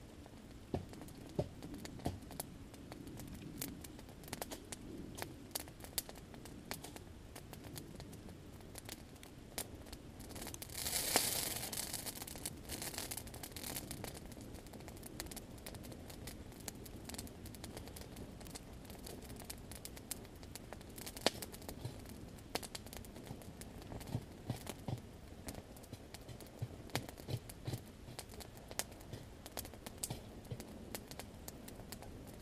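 Wood campfire crackling, with sharp pops scattered throughout. About a third of the way through, a rushing hiss swells for about two seconds and fades.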